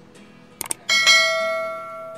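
Two light clicks, then a bright bell-like ring that starts suddenly about a second in and fades slowly over about a second and a half.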